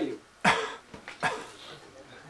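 A man coughing twice, about half a second and just over a second in.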